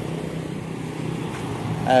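Steady low hum of motor-vehicle engines from road traffic. A man's voice starts right at the end.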